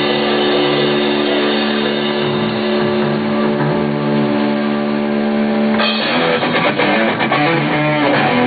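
Rock band playing with electric guitar and drums: a long held chord rings for about six seconds, then the band comes back in with a choppy, rhythmic part.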